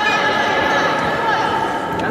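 Sports-hall ambience: indistinct background voices and general hall noise, with a faint steady high-pitched tone running through it.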